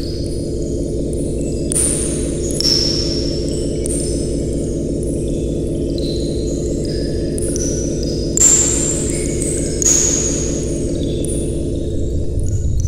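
Designed electronic soundscape standing for the inside of an integrated circuit: a steady low synthetic drone under scattered high-pitched pings and blips. Short hissy swishes come about 2 s in, and louder ones about 8 and 10 seconds in.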